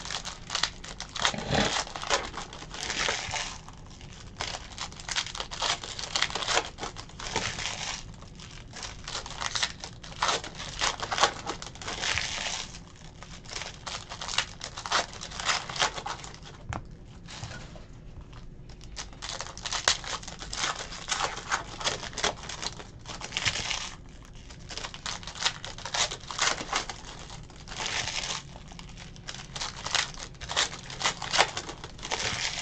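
Foil wrappers of Panini Playoff Football card packs crinkling and tearing as the packs are ripped open and the cards pulled out. The sound comes in bursts with short pauses and one longer lull past the middle.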